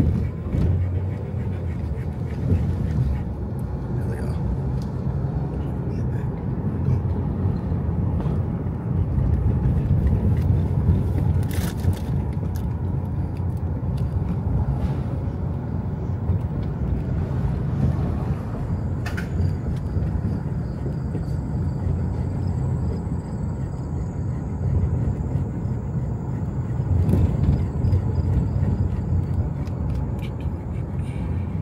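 A car driving slowly along a rough city street: a steady low engine and tyre rumble, with a couple of sharp clicks and a faint thin high tone in the second half.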